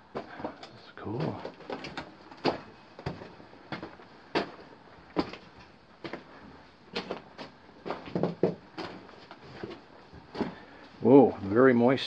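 Footsteps on the loose rock and gravel floor of a mine tunnel: irregular sharp crunches and knocks, about one or two a second, as someone walks along the drift.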